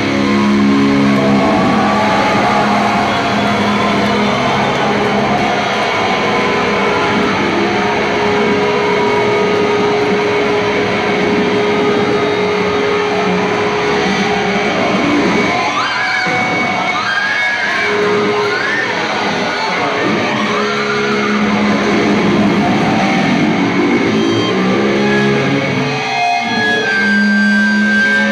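Loud live heavy-metal electric guitars through a hall PA, ringing out long held chords and notes, with bending, sliding notes about two-thirds of the way in.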